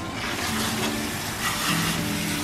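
Water running steadily from a salon shampoo-bowl sprayer onto hair, a continuous hiss.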